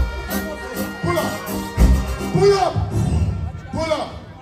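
Live reggae band playing on stage, with heavy bass and drums and brief vocal cries over it; the music thins out near the end.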